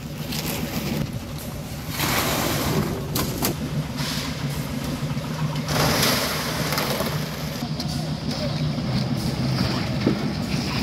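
An engine running steadily on a concrete-pouring site, with two rushes of gritty noise, about two seconds in and again about six seconds in, the second as wet concrete slides out of a hoist bucket into wheelbarrows.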